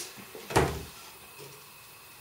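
A single knock about half a second in as a plate is taken from a kitchen cupboard, then faint room tone.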